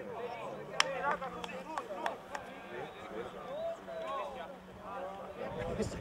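Several voices shouting and calling at once, overlapping and indistinct, from players and people on the sideline of a rugby match. A single sharp click about a second in is the loudest sound, followed by a few fainter clicks.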